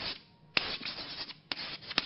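Chalk writing on a chalkboard: a run of scratchy, rubbing strokes, each starting sharply, with a short lull near the start.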